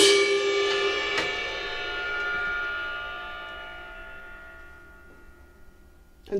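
Drum-kit cymbal struck hard at the close of a drum passage, then left ringing and slowly fading away over about five seconds, with one light tap about a second in.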